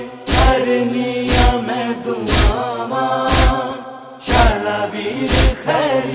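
Noha backing of chanted voices holding a sustained, slowly shifting drone, over heavy matam (chest-beating) thumps about once a second.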